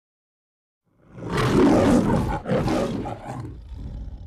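The MGM logo's lion roaring: a loud roar starting about a second in, a break, a second roar, then softer growls that fade out.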